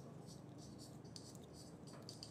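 Faint marker strokes on a whiteboard: short, irregular scratching squeaks over a low steady hum.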